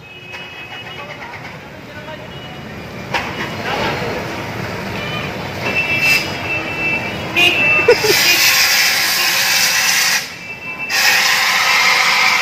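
Fire extinguisher discharging dry powder onto a burning scooter: a loud hiss that starts about two-thirds of the way in, breaks off briefly, then resumes. Before it, people's voices can be heard.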